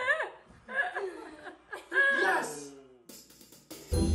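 People's voices exclaiming and laughing in short bursts, then background music starting just before the end.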